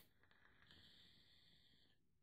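Near silence with a faint, steady airy hiss of a drag being drawn on an Eleaf iStick 20W e-cigarette with a Pro Tank, broken by a few faint clicks about half a second in.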